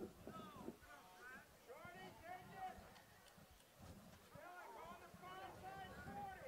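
Faint voices calling out, barely above near silence, with rising and falling pitch through the few seconds.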